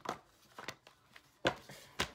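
A tarot deck being shuffled by hand: a handful of short, sharp card snaps, the loudest about one and a half seconds in.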